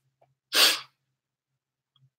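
A single short, sharp breath noise from a woman, about half a second in, lasting about a third of a second.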